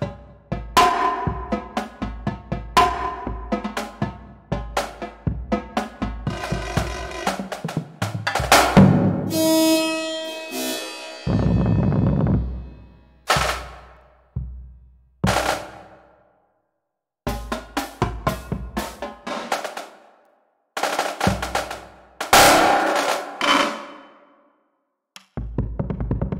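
Marching drumline cadence played back from notation software with marching percussion samples: snare line, tenor drums and a five-drum bass line playing rhythmic phrases separated by short dead stops. Near the middle a cymbal crash rings out, followed by a bass drum roll.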